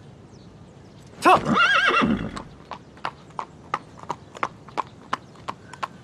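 A horse whinnies loudly about a second in. Then its hooves clip-clop in a steady rhythm of about four hoofbeats a second as it moves off.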